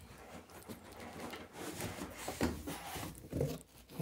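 Cardboard carton being slid up and off a boxed PC case: cardboard scraping and rustling against foam and plastic, with a couple of dull thumps about two and a half and three and a half seconds in.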